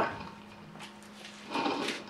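Bible pages and paper rustling close to a microphone in one short burst about one and a half seconds in, over a faint steady hum.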